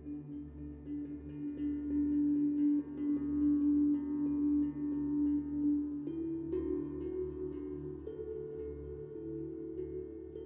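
Soft ambient background music of long, ringing held notes, with the notes shifting about six seconds in and again near eight seconds.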